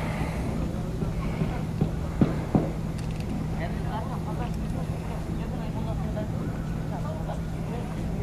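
Outdoor ambience: a steady low hum over a low rumble, with faint distant voices and two sharp knocks a little over two seconds in.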